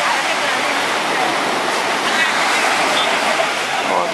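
Small waves breaking and washing up on a sandy beach: a steady, even rush of surf.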